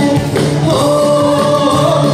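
A live band performing a Bengali song: several voices singing together in long held notes, over guitars.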